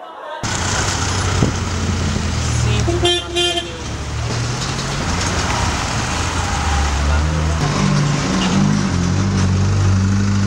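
A vehicle horn toots briefly, in short pulses, about three seconds in. It sounds over a loud, noisy mix of voices and vehicle noise.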